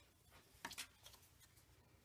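Near silence, with a brief faint rustle of paper being handled about two-thirds of a second in.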